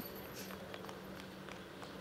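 Quiet background with a faint steady low hum and a few faint ticks.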